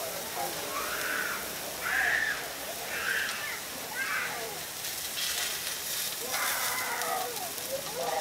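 Beef patty, egg and buns sizzling on a steel flat-top griddle. A metal spatula scrapes and clicks against the griddle plate from about five seconds in.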